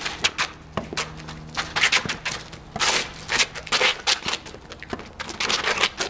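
Rally on an asphalt court: sharp knocks of racket strikes and ball bounces scattered through, with sneakers scuffing and scraping on the pavement.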